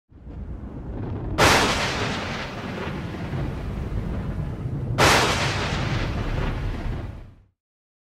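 Intro sound effects: a low rumble with two loud boom hits, about a second and a half in and again about five seconds in, each ringing out and dying away, then cutting off suddenly shortly before the end.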